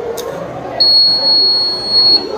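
The piezo buzzer of a student-built fire alarm gives one steady, high-pitched beep lasting over a second, starting just under a second in. The alarm has been set off by its infrared flame sensor picking up a lit match held near it.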